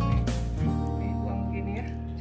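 Background music with guitar over a steady bass.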